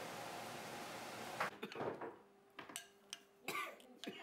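A steady hiss, then from about a second and a half in, a few light clinks and short knocks of a spoon and ceramic dishes at a table.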